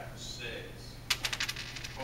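A quick rattle of sharp clicks, about eight to ten in under a second, the first one loudest, starting about a second in.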